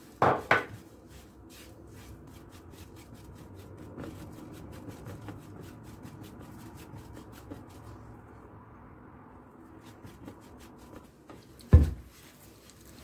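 Dry oat flakes being stirred and scraped around a non-stick frying pan with a spatula while they are dry-toasted: a run of soft, quick rasping strokes. Two louder knocks stand out, one just after the start and one near the end.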